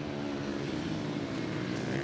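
Supermoto race motorcycles' single-cylinder engines running at speed on track, a steady engine note with small shifts in pitch as the bikes go through a corner.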